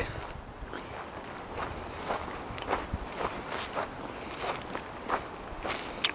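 Footsteps walking along a dirt forest trail, a steady pace of about two steps a second.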